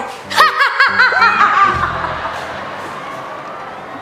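A short burst of high-pitched snickering laughter lasting about a second, followed by a lingering tone that slowly fades away.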